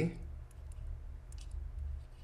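Faint, scattered clicks of a stylus tapping and writing on a tablet, over a low steady hum.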